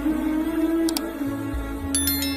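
Background music with a steady held tone over a pulsing bass. Two short clicks, about a second apart, come from the subscribe animation's cursor pressing the like button and then the subscribe button.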